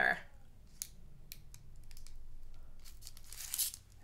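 Paper packaging crinkling and rustling as it is handled, with a few small ticks and a slightly louder crinkle near the end.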